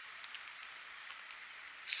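Quiet outdoor background: a faint steady hiss with a few soft ticks, and a man's voice beginning just at the end.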